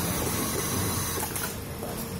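Industrial sewing machines running with a steady mechanical whir, a little quieter after about one and a half seconds.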